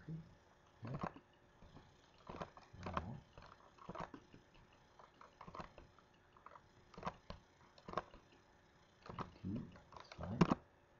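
Scattered mouse clicks and keyboard taps, about a dozen short separate sounds, with a couple of faint low vocal sounds about three seconds in and near the end.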